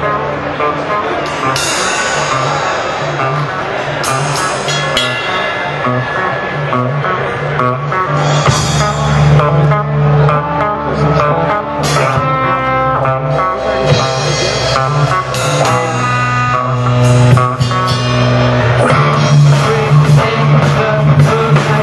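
A live rock band playing guitar and drum kit at the start of a song, with sustained low guitar notes and sharp drum strikes every second or few.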